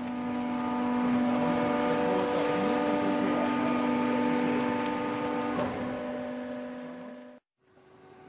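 Steady hum of a cardboard baler's hydraulic power pack running: a low tone with overtones. It swells up over the first second, sinks from about six seconds in and cuts off abruptly just before the end.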